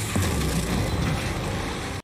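Magic-blast sound effect from a fantasy TV soundtrack: a loud, steady rushing noise with a deep rumble underneath, cut off suddenly at the end.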